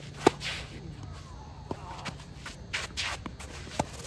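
Tennis rally on a green clay court: three sharp pops of the ball off the rackets, the first and loudest just after the start, another before the halfway mark and one near the end, with shoes scuffing and sliding on the gritty clay between shots.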